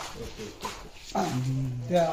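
Men's voices in speech; about a second in, one voice holds a single drawn-out, level-pitched sound for under a second.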